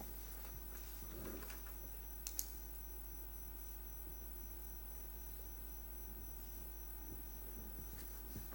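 Quiet room tone with a steady low electrical hum, broken by a couple of faint clicks a little over two seconds in.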